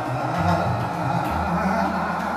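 Hindustani classical music in raag Kirwani: a held melodic line over a tanpura drone.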